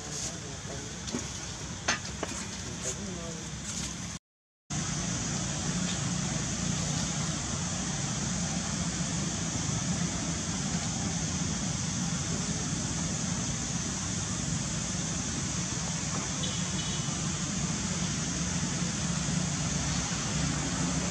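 Steady outdoor background noise: a low hum with a high hiss above it. Faint voices and a few light clicks in the first few seconds, then the sound drops out completely for about half a second before the steady noise resumes.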